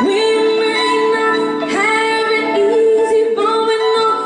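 Live band music with a woman singing long held notes without clear words, the first note giving way to a second just under two seconds in, over electric guitar and keyboard accompaniment.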